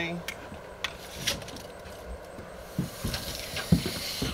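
Knocks and clicks of a wooden board being handled on a miter saw stand. Near the end, a steel tape measure's blade is pulled out along the board with a rattling whir and a sharp click.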